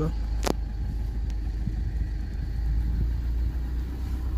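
A car's steady low rumble heard from inside the cabin, with a single sharp click about half a second in.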